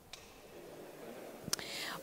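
A quiet pause of faint background hiss, with a short sharp click about one and a half seconds in, after which the hiss is a little louder.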